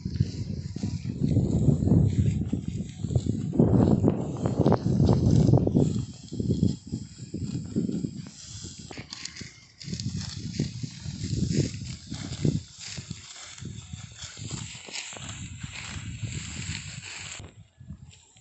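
Dry wheat stalks rustling and crackling as they are cut by hand with sickles, under irregular gusts of wind rumbling on the microphone, heaviest in the first six seconds.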